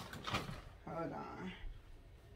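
A woman's voice briefly murmuring or humming a wordless sound about a second in, amid quiet rustling and light knocks from handling a sofa and a faux-fur throw.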